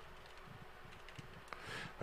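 Quiet room tone with a low steady hum, a faint tick or two, and a soft rise in noise near the end.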